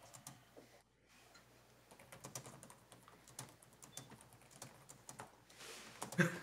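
Near silence in a quiet meeting room, with faint, irregular clicks of typing on a laptop keyboard.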